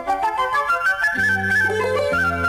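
Instrumental passage of a 1980s Tamil film song: a flute playing a stepwise melody, with bass and accompaniment coming in just over a second in.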